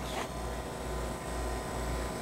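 Steady low room hum with faint background noise.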